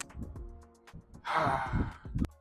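A person letting out a long, breathy sigh about a second in, as a fit of laughter winds down, over faint background music.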